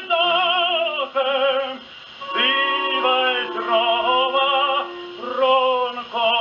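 A tenor singing an operatic aria with orchestra, on a 1937 shellac 78 rpm record played on a portable acoustic gramophone. The sung phrases have a strong vibrato, with a brief break about two seconds in and then a long held note.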